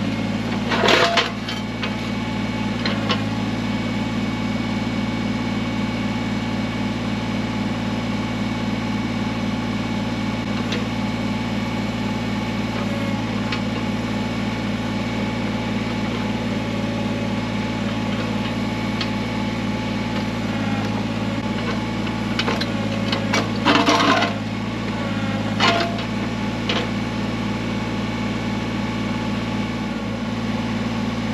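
Kubota BX23S tractor's three-cylinder diesel engine running steadily while its backhoe digs at a large rock, with brief clattering knocks and scrapes of the bucket against rock and dirt about a second in and again around three-quarters of the way through.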